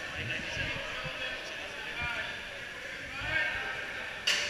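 Indistinct talk from people nearby, with a few dull low thumps.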